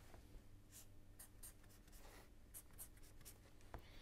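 Faint scratching of a felt-tip marker drawn across paper in a series of short, quick strokes, as hatch marks are sketched.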